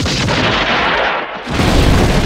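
Gunfire from a western shootout, with the noise of the shots filling the first second. About one and a half seconds in, after a brief drop, a large explosion starts with a heavy low rumble.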